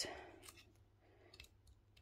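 A few faint, light clicks of small metal parts being handled: an Allen key being fitted to a set screw on a hand tufting gun.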